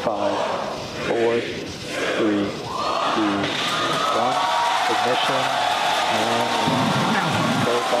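Rocket launch broadcast audio: voices over music, joined about three seconds in by a steady rushing noise that lasts to the end.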